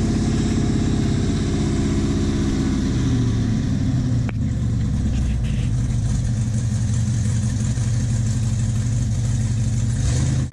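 Cammed 5.3-litre LS V8 in a Chevrolet S10 running through a custom exhaust. Its pitch shifts over the first few seconds, then holds steady and loud.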